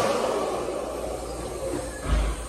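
Columbia Vortex hand dryer blowing, its rush of air steadily getting quieter.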